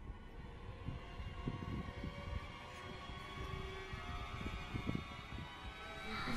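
Quiet suspense film score: a cluster of sustained, eerie tones builds slowly, with scattered faint low thuds underneath.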